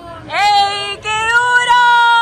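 A 13-year-old boy singing: a short note that slides up into pitch, then from about a second in a long held note, steady in pitch.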